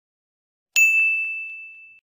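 Notification-bell ding sound effect from a subscribe-button animation: one bright ding about three-quarters of a second in, a single high ringing tone fading away, with a couple of faint clicks just after it.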